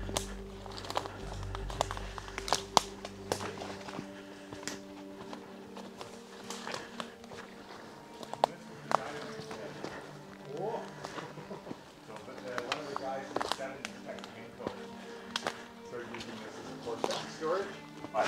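Background music with a steady low drone, over footsteps and twigs snapping in forest undergrowth as sharp irregular clicks. Brief snatches of voices come in the second half.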